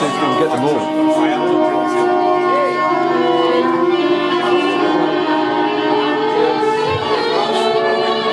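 Live psychedelic space-rock band playing: a violin winds and glides over a dense, sustained drone of held notes from the strings and the rest of the band.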